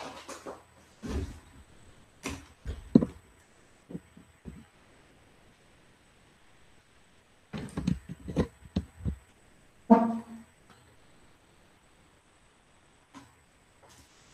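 Knocks, bumps and clicks of a microphone being handled and set up, coming in scattered clusters, with a brief pitched sound about ten seconds in.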